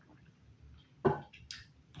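A man taking a drink from a bottle: faint mouth sounds, then one sudden short sound about a second in and a brief hiss about half a second later.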